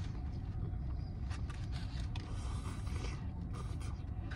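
Soft chewing of a sandwich and a few faint crinkles of its paper wrapper over a steady low rumble inside a car.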